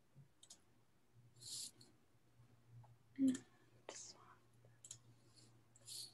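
Faint, scattered computer-mouse clicks and short soft breathy hisses over a low steady hum. The loudest sound is a brief knock about three seconds in.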